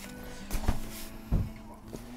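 A large cardboard box being set down and handled on a tabletop, with a couple of dull thumps about half a second and a second and a half in, over steady background music.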